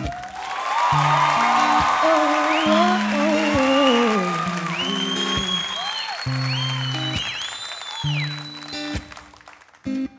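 Studio audience applauding, cheering and whistling over an acoustic guitar playing slow held chords. The applause dies away about nine seconds in, leaving the guitar.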